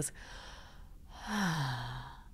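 A woman's long, audible sigh: a faint breath in, then a breathy exhale whose voiced tone falls steadily in pitch. It is given as the sound of a nervous system letting go into calm regulation.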